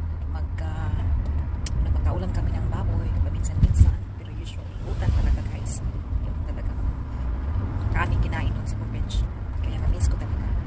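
Steady low rumble of a car heard from inside the cabin, with a few light clicks.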